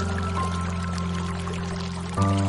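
Slow, soothing piano music holding a soft chord, with one new note entering about half a second in, over a steady sound of running, pouring water.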